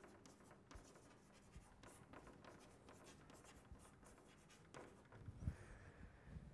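Faint chalk writing on a blackboard: a scattered series of light taps and scratches as words are chalked up. Near the end comes a soft low thump.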